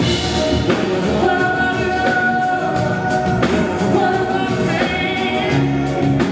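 A man singing into a microphone over a live band of drums, bass and keys, with several long held notes.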